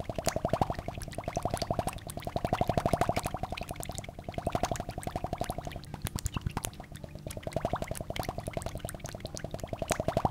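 Experimental electronic music: a rapid train of clicking, bubbling pulses, a dozen or more a second, over a low steady drone. A mid-pitched tone swells up and fades away about every two to three seconds.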